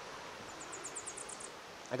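Small songbird giving a quick, very high-pitched trill of about ten short notes, beginning about half a second in and lasting under a second, over the steady rush of the Lyre River.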